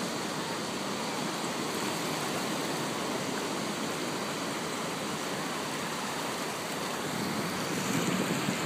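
Ocean surf breaking along the shore, heard as a steady, even wash of noise.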